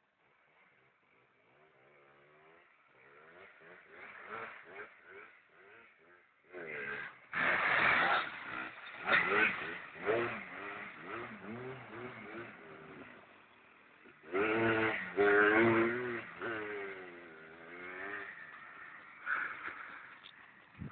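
Yamaha Blaster quad's two-stroke single-cylinder engine revving up and down in repeated throttle bursts as its rear wheels spin in loose sand. It comes in after a couple of seconds of silence and is loudest twice, about a third of the way in and again past the middle.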